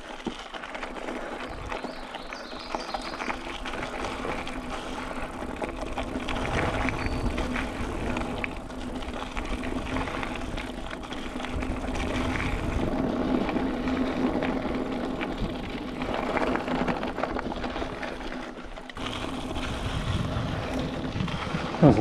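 Mountain bike riding along a dirt singletrack: tyre noise, drivetrain and frame rattles, and wind on the camera microphone, with a steady hum running under it. The noise drops away briefly near the end.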